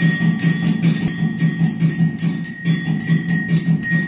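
Temple bells ringing fast and evenly, about five strikes a second, with a low beat in time underneath, as the lamp is waved in the aarti offering.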